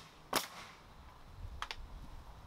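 Pneumatic nail gun firing once, a sharp shot about half a second in, driving a nail into a cedar fence picket. A much fainter click follows about a second later.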